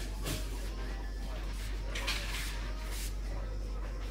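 Shop ambience: a faint murmur of voices over a steady low hum, with a few short hissy rustles.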